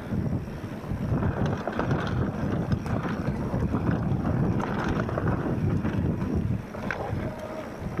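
Wind rushing over the microphone and the rumble and rattle of a mountain bike riding fast down a rough dirt trail, with small clicks and knocks from the bike throughout, easing a little near the end.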